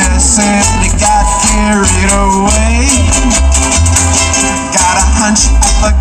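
Reggae song played by a live band: a steady bass line under guitar and a shaker, with no singing.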